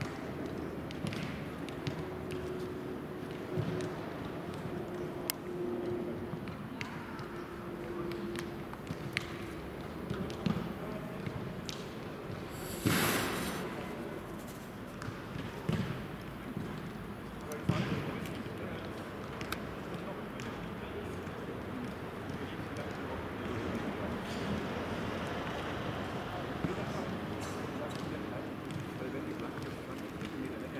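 Footballs being kicked and juggled on a grass pitch: short sharp thuds scattered irregularly, over background voices. A louder noisy burst of about half a second comes a little before the middle.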